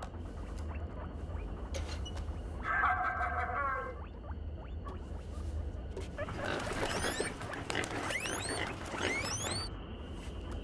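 Skin squeaking against porthole glass: a quick run of high rising squeaks from about six seconds in until near the end, over a steady low hum. A short pitched sound comes about three seconds in.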